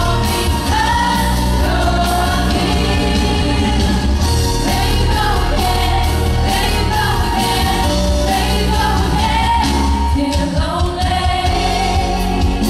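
A woman singing a song live into a handheld microphone over a band backing with a strong, steady bass.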